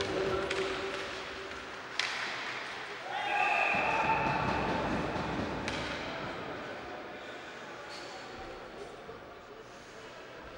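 Ice-hockey game sound: a sharp crack of a puck struck by a stick about two seconds in, then an arena horn sounds for about a second and a half, marking a goal, with voices and shouts in the rink.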